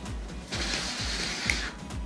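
Air hissing out of a blown-up rubber balloon through a hole for about a second, with a small click near the end. Background music with a steady beat runs underneath.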